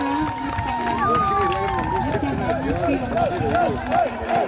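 Volleyball spectators shouting and calling out, many voices overlapping, with one long drawn-out call about a second in.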